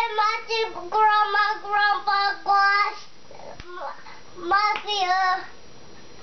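A young child singing in a high voice: a phrase of short held notes, a pause, then a brief second phrase.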